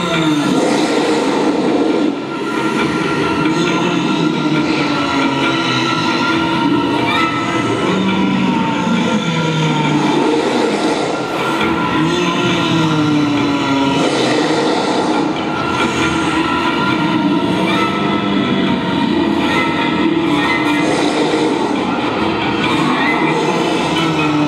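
Recorded Tyrannosaurus rex roars and growls played loud over an arena sound system, a long run of deep calls that slide and fall in pitch, one after another.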